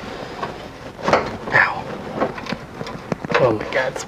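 A man straining and muttering under his breath while fitting nuts by hand at the base of a carburetor on an air-cooled VW engine, with a few sharp small clicks of parts being handled.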